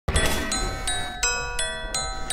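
A melody of struck, ringing chime-like notes, just under three a second, over a steady low hum.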